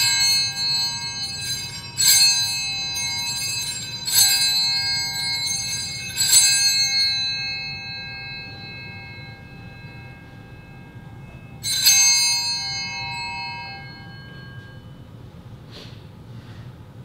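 Altar bells (Sanctus bells) rung at the consecration and elevation of the chalice: four high, bright rings about two seconds apart, then another about twelve seconds in, each ringing out before the next.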